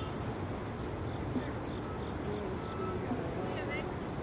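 Insects chirping in a high, rapid, even pulse that goes on without a break.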